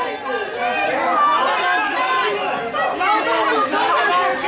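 Crowd of protesters and police, many voices talking and shouting over one another at once in a dense, continuous chatter.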